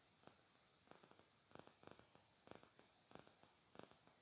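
Near silence with a few faint, scattered ticks: the centre stitching of a pleated fabric strip being unpicked.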